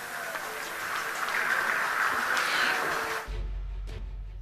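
Rocket liftoff with spectators cheering: a steady rushing noise that cuts off suddenly about three seconds in, followed by a low hum.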